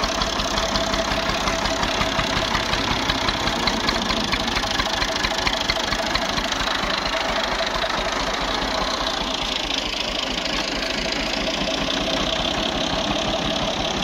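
Small farm tractor's diesel engine running close by with a fast, even knocking beat as it is driven over rough dirt ground.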